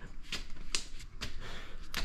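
Light, irregular taps and scuffs of a toddler's hands and small shoes on stone stair treads as he climbs on all fours, about four soft knocks in two seconds.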